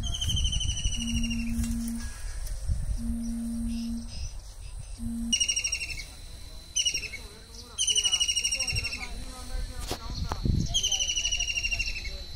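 A kingfisher giving five shrill descending trills, fast rattling runs of notes that slide down in pitch, the first at the start and the rest from about five seconds in. In the first five seconds a low steady hoot-like tone, about a second long, repeats every two seconds.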